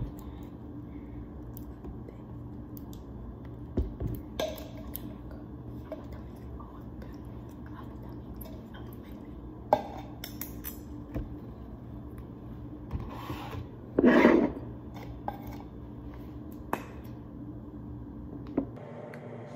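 Condiment bottles and a plastic cup being handled and set down on a kitchen counter: scattered short clicks and knocks, with a louder rustling scrape about fourteen seconds in, over a steady low hum.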